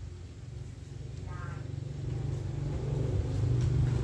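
Motorbike engine running, a low rumble that grows steadily louder as it approaches.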